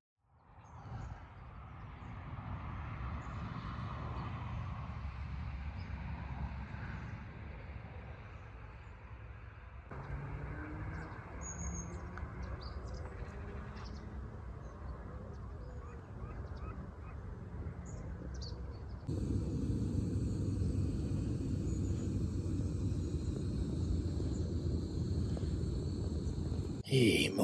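Outdoor lakeside ambience: a steady low rumble, like wind or distant traffic, with a few faint bird calls. The background changes abruptly about ten seconds in and again a little before twenty seconds, getting louder for the last part.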